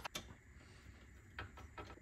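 Near silence with a few faint, short clicks from PC case hardware being handled: one right at the start, then two more in the second half.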